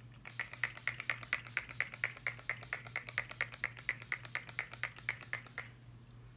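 Pump-action setting spray bottle (NYX Bear With Me Prime Set Refresh Multitasking Spray) being pumped over and over, a quick steady run of short hissing spritzes, about five a second for some five seconds, then stopping.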